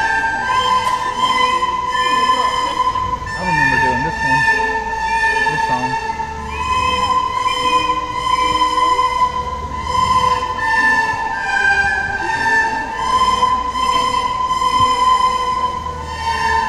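A group of children playing recorders together, a slow melody of long held notes that change pitch every second or so.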